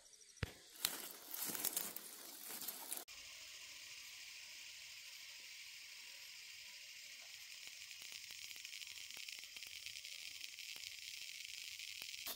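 A few rustles and knocks of handling in the garden, then from about three seconds in a steady night chorus of grass insects such as crickets, a continuous high trilling.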